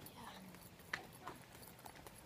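Quiet footsteps on a hard walkway: a few faint taps, the clearest about a second in.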